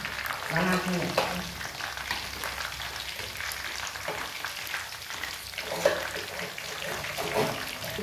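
Sev, strands of gram-flour batter, deep-frying in hot oil in a kadhai: a steady sizzle with fine crackling throughout.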